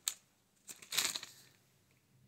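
A clear plastic lure bag crinkling as it is handled: a short rustle at the start and a longer one about a second in.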